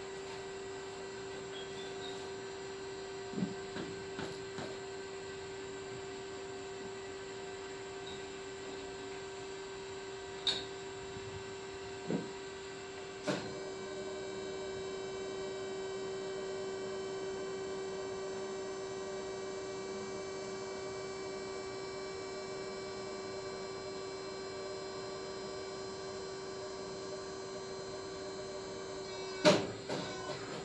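Steady electric hum of a hydraulic hose crimping machine running, a single low tone with many overtones, a little louder for several seconds past the middle. A few short knocks come in the first half.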